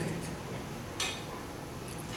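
Low room noise in a pause, with one sharp click about a second in.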